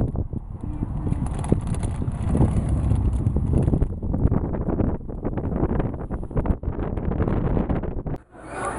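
Wind buffeting the camcorder's microphone in a loud, uneven rumble, with short knocks and gusts from about halfway through.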